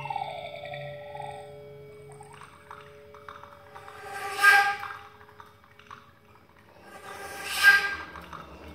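Contemporary electroacoustic chamber music for flute, piano and tape: held tones and a slow falling glide, then two noisy, watery surges about three seconds apart, each building to a loud peak.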